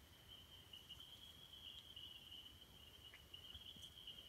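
Near silence, with a faint, steady high-pitched trill from a cricket.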